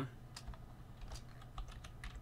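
Faint typing on a computer keyboard: a few scattered key clicks.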